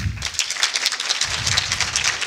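Audience applauding at the close of a talk: many hands clapping in a dense patter that swells within the first half second and then holds steady.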